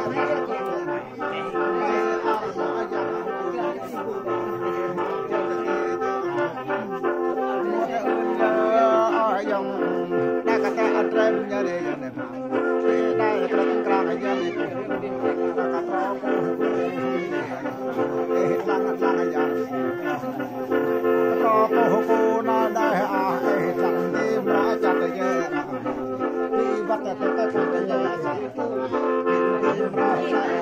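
Gourd mouth organ with long bamboo pipes, a free-reed instrument, played continuously: a steady low drone with several tones held together under a moving melody.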